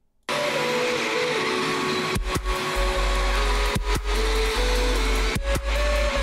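An electronic music track playing back from an FL Studio project: dense, noisy synth layers with held notes start abruptly a moment in, and a deep sub-bass with sharp drum hits comes in about two seconds in.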